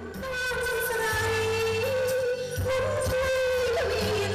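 A woman singing live into a handheld microphone over a pop backing track. The music begins suddenly, with long held, slightly wavering melody notes over a steady bass.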